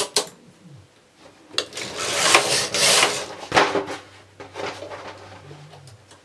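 Hands working a knitting machine's needle bed with a metal transfer tool, moving a loop onto a needle: a click, then a couple of seconds of scraping and rubbing, another sharp click, and fainter rubbing that dies away.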